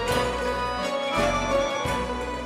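Instrumental music from a band, with a bass line changing notes about every half second and no singing.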